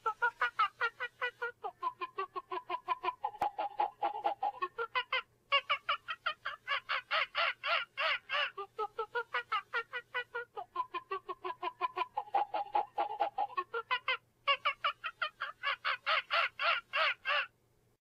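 Crackin' Up Coco Monkey plush toy chuckling and chattering in baby-monkey sounds from its built-in speaker as it dances and spins. It is a fast run of laughing pulses, about five or six a second, that breaks off briefly twice, about five seconds in and again near fourteen seconds, before starting up again.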